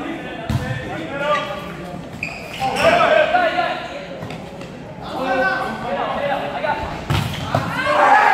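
Indoor volleyball rally in a gymnasium: the ball struck several times, sharp slaps a second or two apart, over players and spectators calling out and talking.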